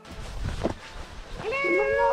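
A person's drawn-out, high-pitched wordless cry, gliding up and then held, starting about three-quarters of the way in.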